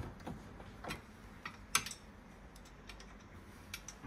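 Scattered small clicks and ticks of a screwdriver undoing a screw in the end bracket of a cupboard bar, with one sharper click a little under two seconds in.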